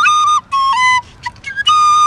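A black end-blown flute playing a simple melody of separate short notes in a high register, each held a fraction of a second with brief breaks between them.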